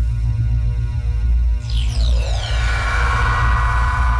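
Electronic logo sting: a deep, steady bass drone with a falling sweep about halfway through, then a bright held chord that swells toward the end.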